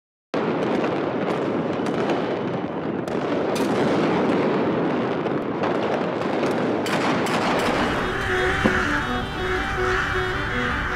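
Many fireworks going off at once across a city: a dense, continuous crackle of bangs with sharper cracks every second or so. Music comes in about eight seconds in.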